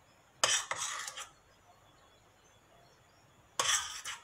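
A metal utensil scraping and clinking against a stainless steel pot of caramel syrup in two short bouts, one about half a second in and one near the end.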